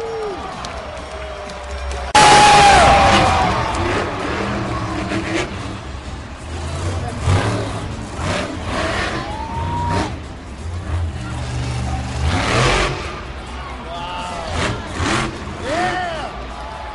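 Monster truck engine revving and running hard, with a sudden loud surge about two seconds in that fades over the next couple of seconds.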